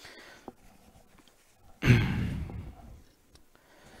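A man's heavy sigh close to the microphone, about two seconds in, loud at first and trailing off over about a second. A faint click comes before it.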